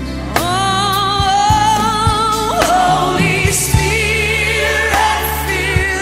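Gospel worship song: sung voices hold long notes with vibrato, coming in about half a second in, over bass and drums.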